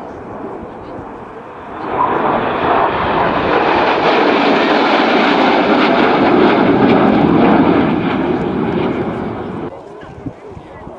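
Twin-turbofan jet engines of a formation of MiG-29 fighters flying past. The noise swells sharply about two seconds in, holds loud for several seconds, eases off, then cuts off suddenly just before the end.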